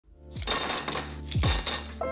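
Ice dropped into a clear drinking glass, clattering and clinking against the glass in two pours, the second about a second after the first.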